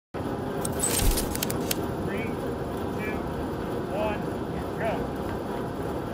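Steady rushing outdoor noise with a few sharp clicks about a second in, and four faint short calls by a distant voice, evenly spaced about a second apart, in the pattern of a start countdown.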